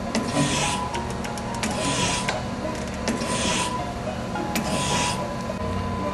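ACER AGS surface grinder running: a rasping hiss swells and fades about every second and a half over a steady machine hum, with a few sharp clicks.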